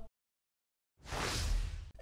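A single whoosh about a second long, swelling and then fading, after a second of dead silence.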